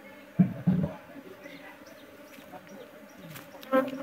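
Honeybees buzzing around an open wooden beehive, a faint steady hum, with two sharp wooden knocks about half a second in as the hive's wooden lid is set down on the box.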